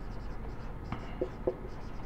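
Marker pen writing on a whiteboard: the tip squeaks and scratches as words are written, with a few short, sharper strokes in the second half.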